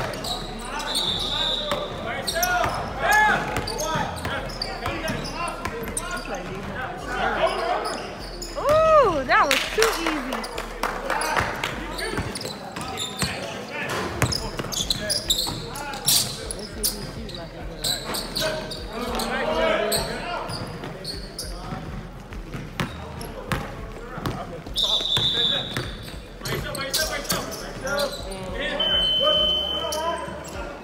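Basketball game on a hardwood gym floor: a ball bouncing, sneakers squeaking, and players calling out, all echoing in a large hall. Sharp squeaks stand out a few times, loudest about nine seconds in.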